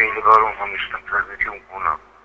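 Speech only: a voice talking, thin and telephone-like as over a remote video link.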